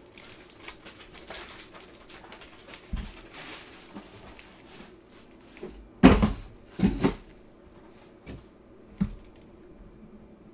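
Clear plastic wrapper crinkling as a trading card is handled and pulled out, then a few short knocks and thumps about six, seven and nine seconds in, the ones near six and seven seconds the loudest.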